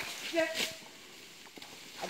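A man's short shouted command to a working elephant, a single brief call, followed by quiet.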